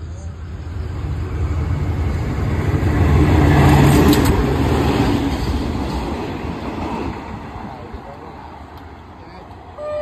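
A freight train hauled by the GEA-class diesel locomotive 4534 passing through a station. Its deep rumble builds to its loudest about three to four seconds in as the locomotive goes by, then the rumble of the rolling wagons fades away.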